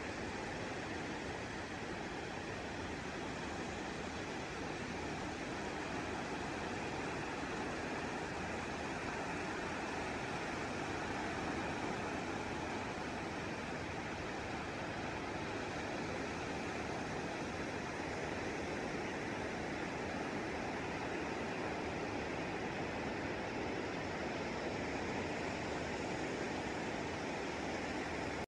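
Surf breaking along a wide sandy beach, heard as a steady, even hiss with no distinct individual wave crashes.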